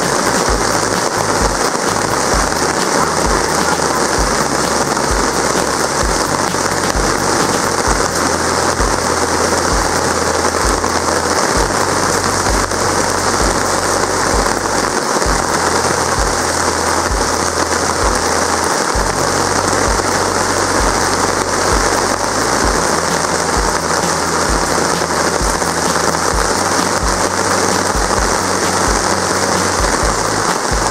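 Heavy rain falling steadily on grass, trees and gravel: a dense, even hiss with no let-up.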